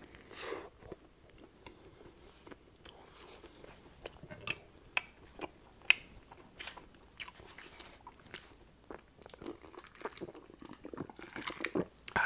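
Close-miked chewing of a mouthful of chicken sandwich: irregular wet mouth clicks and smacks throughout.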